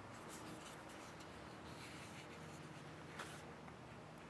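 Faint handling noise of a folding knife being turned in the fingers, then a faint click about three seconds in as the Kershaw Compound's SpeedSafe assisted-opening blade flips open.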